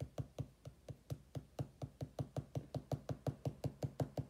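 A pen tip dabbed again and again onto a sketchbook page to stipple in shading, making a steady run of light taps, about seven a second.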